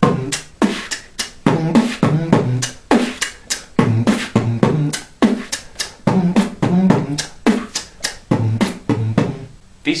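A beatboxer performing a steady beat of kick, snare and hi-hat mouth sounds while humming through his nose at the same time, the hum stepping between pitches like a tune and filling the gaps between the drum hits.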